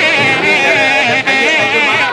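Traditional South Indian wedding music: a high, strongly wavering and ornamented melody line over a drum beat.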